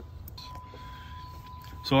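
Electric radiator cooling fan running with a steady low hum, with a thin, steady high-pitched tone joining it a third of a second in.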